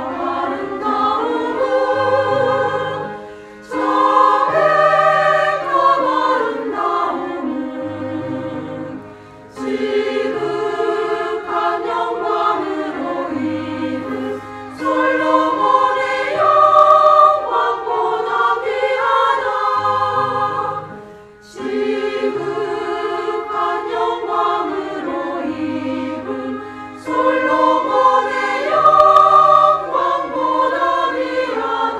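Mixed church choir of men's and women's voices singing a sacred anthem in parts, in long phrases separated by short breaks.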